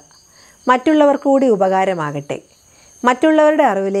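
A woman speaking, with a pause of about half a second near the start and another around two and a half seconds in. Behind her, crickets chirr steadily at a high pitch.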